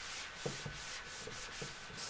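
Cloth wiping a whiteboard clean in quick, repeated back-and-forth strokes, a scratchy rubbing hiss on each pass.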